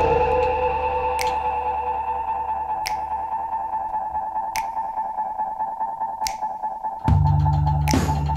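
Instrumental music with no singing: a held synthesizer tone with a short high hit about every second and a half, then bass and drums come in loudly about seven seconds in.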